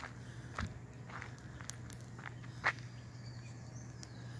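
A few light, scattered clicks and taps over a steady low hum, the sharpest click coming near the end.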